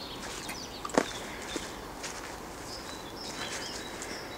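Faint, high bird calls in quiet forest ambience, with footsteps and a single sharp click about a second in.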